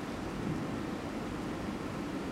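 Steady background noise of the room picked up by the lecture microphone, a pause between spoken phrases.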